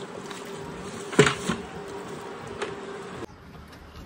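A steady buzzing hum with a sharp knock about a second in and a couple of faint clicks; the hum cuts off suddenly near the end.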